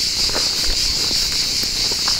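Insects shrilling in a steady, high-pitched chorus, with a faint low rumble underneath.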